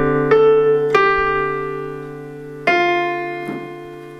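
Digital piano playing slow, held chords: a chord struck at the start and again about a second in, ringing and fading, then a new chord struck near three seconds that fades away.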